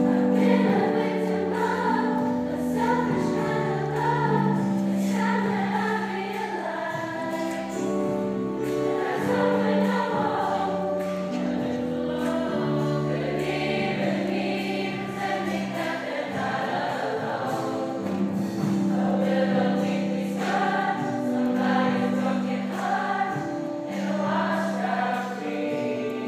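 A large mixed choir singing a song in harmony, with sustained chords, accompanied by a grand piano.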